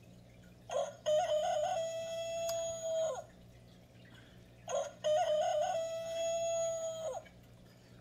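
A rooster crowing twice, about four seconds apart, each crow a short stepped start and a long held note that drops at the end.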